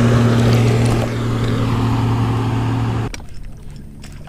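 Boat motor running with a steady low hum that cuts off abruptly about three seconds in.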